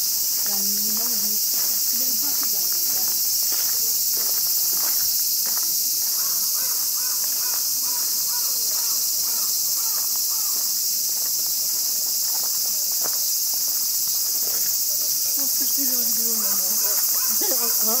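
Summer cicadas in the forest trees, droning in a loud, steady, high-pitched chorus that does not let up.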